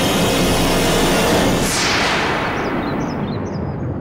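Dramatic sound-effect sting from a TV serial's score: a loud rumbling noise with a whoosh that falls in pitch over about two seconds, leaving a low rumble near the end.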